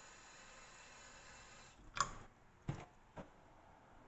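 A thin stream of tap water running faintly into a glass of cucumber seeds and pulp for about two seconds, then three short knocks, the loudest about two seconds in.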